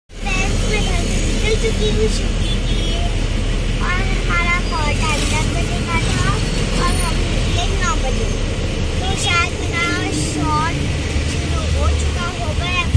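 Auto-rickshaw engine running with road and traffic noise as it drives, a steady low drone that shifts about eight seconds in, under a young girl's chatter.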